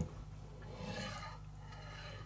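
Faint rubbing as hands handle an RC truck's rubber tires on a carpet mat, swelling slightly about a second in.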